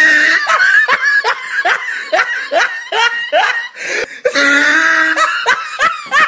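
A person laughing hard: a long run of short ha-ha bursts, about two or three a second, then a longer drawn-out laugh near the end.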